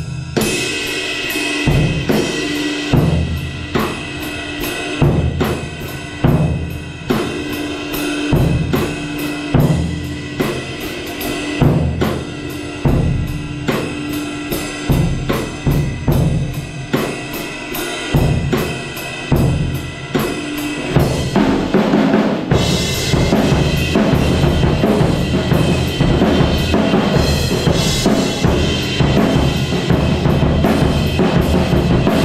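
Acoustic drum kit played with sticks in a steady groove: kick drum and snare under a fast, even hi-hat pattern. About two-thirds of the way through it turns louder and busier, with heavy cymbal wash over the drums.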